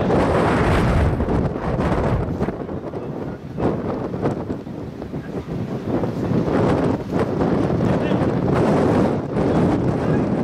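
Wind blowing across the microphone: a loud rushing buffet that swells and eases in gusts, weaker through the middle and strong again near the end.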